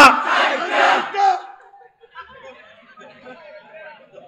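Crowd of listeners shouting a response together, loud for about the first second, then dying away to faint murmuring.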